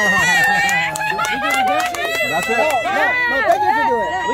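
A small group of adults cheering, whooping and laughing at once, several voices overlapping, with a few sharp taps in the first half.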